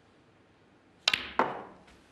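Snooker ball clicks: the cue tip strikes the cue ball about a second in, and the cue ball clicks into the brown a moment later. A third, duller knock follows about a quarter second after, as the brown is potted.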